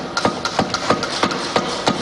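Legislators thumping their desks in a rapid, irregular patter of knocks, the way members of India's Parliament applaud a point they approve of.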